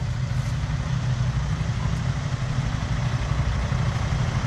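Diesel engine of a multi-axle dump truck idling steadily with a low, even rumble.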